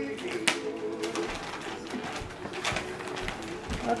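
A low, steady cooing hum for about the first second, then irregular crinkling and rustling of wrapping paper as gifts are unwrapped.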